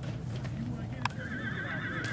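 A horse whinnying, one long wavering call starting about a second in, with people talking in the background.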